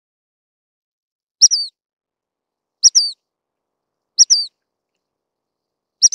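Dark-sided flycatcher giving a short, high call three times, about a second and a half apart. Each call is a sharp note followed by a quick down-slurred note.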